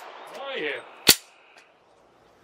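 A single sharp metallic clack about a second in, short and without echo, from a handgun being handled just after firing.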